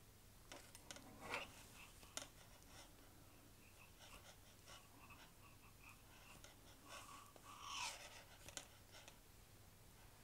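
Near silence: faint scattered clicks and scratches of metal double-pointed knitting needles and yarn as stitches are worked by hand, with a slightly louder rustle about a second in and another about eight seconds in.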